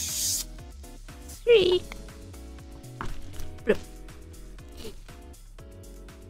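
Soft background music playing steadily, with a brief crinkle of plastic packaging right at the start and two short wordless vocal sounds, one a little over a second in and one near the middle.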